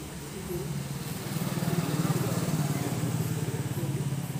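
A passing motor vehicle's engine: a low buzzing drone that grows to its loudest about two seconds in, then slowly fades.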